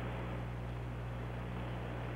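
Steady low hum with an even hiss from an old television broadcast audio feed, and no other sound.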